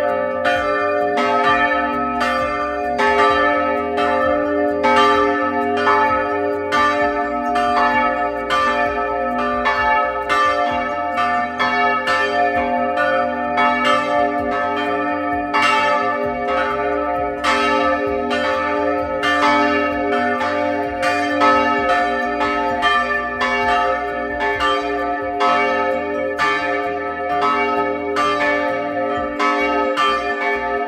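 Two historic bronze church bells, hand-swung by rope in a wooden bell frame, ringing together close up, their strikes overlapping about twice a second. The larger bell, St. Lawrence, was cast in 1587 by Georg Gleixner of Jihlava; the other dates from 1473.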